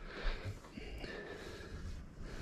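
Quiet room noise with a faint tick about a second in; no cue strike or ball collision stands out.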